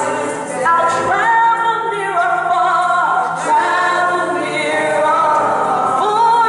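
Two women singing a gospel praise song into microphones, with long held notes.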